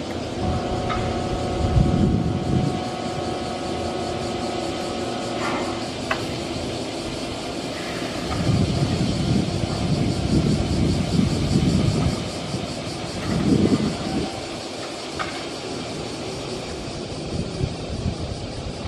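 Nankai 7100-series electric commuter train standing at a station platform. A few steady held tones sound for about the first five seconds and end with a click. Low rumbling from the train then swells and fades several times.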